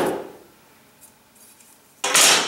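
Faint metallic clicks as a steel straightedge and a tape measure are lifted off a tyre and set down on a wooden workbench, followed near the end by a short hissing rasp.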